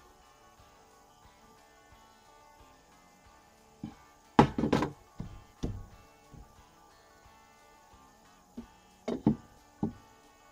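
Soft background music, with a handful of sharp wooden knocks and clunks from a spirit level being set down on deck boards and placed against a 4x4 post. The loudest group of knocks comes about halfway through, and a few more follow near the end.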